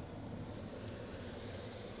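Faint, steady low hum of a car cabin's background, with no distinct event.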